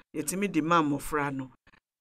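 Speech only: a person talking, which stops about a second and a half in and leaves a short pause.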